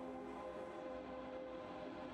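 Quiet ambient music of several sustained, overlapping tones.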